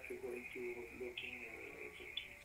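Faint speech over a live video-call link, too quiet for the words to be made out.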